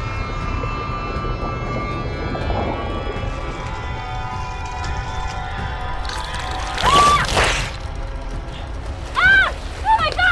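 Horror-film soundtrack: a sustained eerie music drone over a low rumble. About seven seconds in comes a loud splash with a cry. Near the end there are several short shrieks, each rising and falling in pitch.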